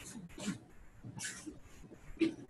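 Faint, indistinct voice sounds: short scattered murmurs and breathy hisses with no clear words.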